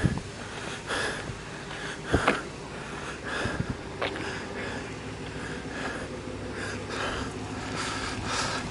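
Wind buffeting the camera's microphone, with a couple of brief knocks about two and four seconds in.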